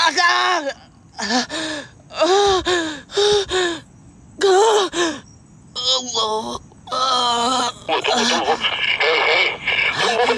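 A person's voice moaning and wailing without clear words: a string of drawn-out cries, each rising and falling in pitch, with short breaks between them.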